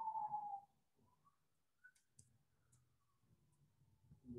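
Near silence broken by a few faint computer keyboard key clicks as text is typed, with a voice trailing off in the first half-second.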